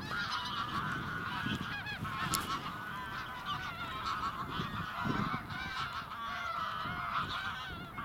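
A large flock of waterbirds calling all at once: a dense, steady chorus of many overlapping calls.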